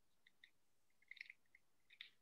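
Near silence with a few faint, short clicks, bunched about a second in and again near the end: a long-nosed butane lighter's igniter being worked while it fails to light a candle.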